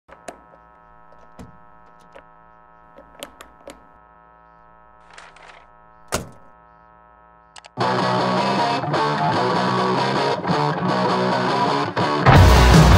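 A steady electrical hum with scattered clicks and knocks of objects being handled on a table. About eight seconds in, a loud wall of distorted, noisy music starts abruptly, breaking off briefly a few times.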